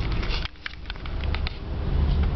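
Scattered clicks and knocks from a handheld camera being moved and handled, over the low rumble of a car's cabin. The rumble dips briefly about half a second in.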